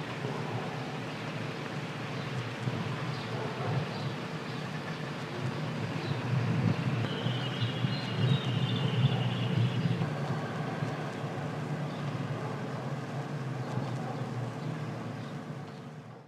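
A steady low rumble of background noise with a faint steady hum, and a thin high whistling tone for a few seconds in the middle. It fades out at the very end.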